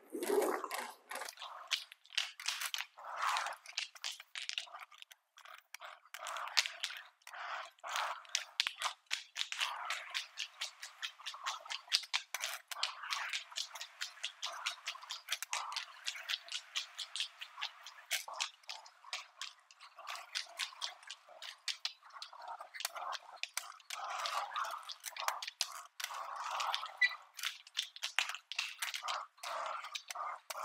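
A squeegee pushing wet epoxy primer across broom-finished concrete: irregular wet crackling and clicking with scraping, heard from across the floor.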